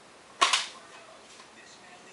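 A plastic DVD case snapping open: one sharp double click about half a second in.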